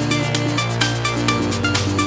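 Electronic club dance mix with a steady, even drum beat, a repeating riff of short synth notes and a sustained bass line underneath.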